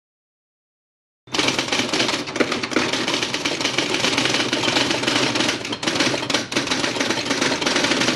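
Typewriter sound effect: rapid, continuous key clatter that starts suddenly a little over a second in, with two short breaks later on.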